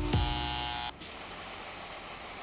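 Apartment door intercom buzzing loudly for just under a second as its call button is pressed, cutting off sharply. Low, even background noise follows.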